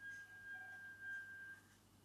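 Near silence: room tone with a faint, steady high-pitched tone that stops about a second and a half in.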